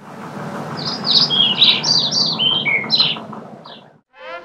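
Songbirds chirping: a quick run of short, downward-sweeping chirps over a steady background noise, the whole fading out near the end.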